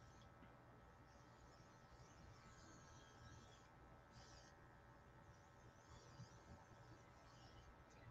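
Near silence, with faint, intermittent hiss from a makeup airbrush spraying foundation in short passes.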